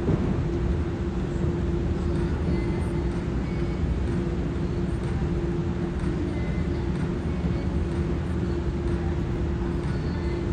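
Steady low rumble of room noise in a large gymnasium, with a constant hum running under it. One sharp knock right at the start.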